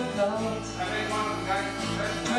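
Live acoustic folk-country song: twelve-string acoustic guitar and acoustic bass guitar played together, with a woman singing. A low bass note is held from about half a second in.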